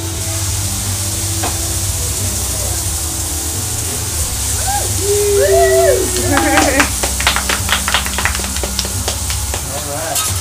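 Food and poured liquid sizzling steadily on a hot flat-top hibachi griddle as it flares into flames. A quick run of sharp clicks comes through the second half.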